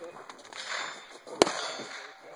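A single sharp gunshot crack about one and a half seconds in, with a short ring after it, amid people talking at a shooting range.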